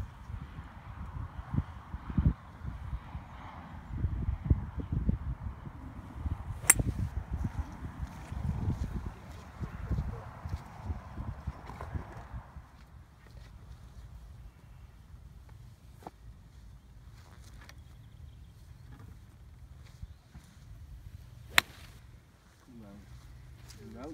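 Two sharp cracks of golf clubs striking balls, about seven and about twenty-two seconds in, the second the louder, over wind rumbling and gusting on the microphone.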